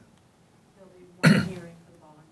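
A single cough from someone in the room, sudden and loud about a second into an otherwise quiet pause, fading within half a second.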